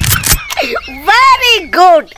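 A person's voice: a few short breathy bursts, then a high, drawn-out vocal sound that swings up and down in pitch, like exaggerated laughing.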